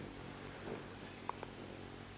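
Hummingbird wings humming in a low, steady buzz as the bird hovers close to the feeder, with one short high chip about a second in.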